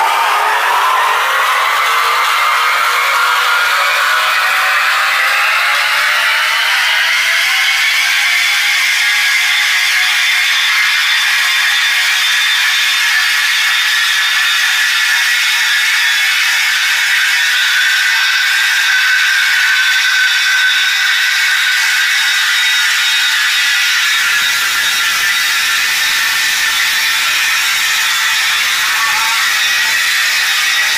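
Marble floor grinding and polishing machine running under load, a steady motor whine with grinding noise that rises in pitch over the first several seconds and then holds level.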